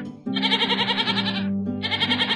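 Goat kid bleating in two long, quavering calls over an acoustic guitar accompaniment. In the song, the bleat stands for a long sound.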